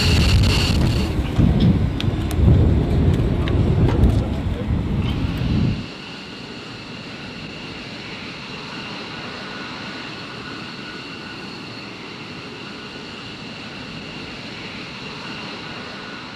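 F-15 Eagle's twin Pratt & Whitney F100 turbofans running on the ground, loud, with a steady high turbine whine over the noise. About six seconds in it drops abruptly to a quieter, steady jet whine that fades out near the end.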